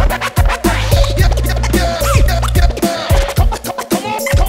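Hip hop beat with DJ turntable scratching: short, sliding scratches over a kick drum and a steady bass line, with no rapping.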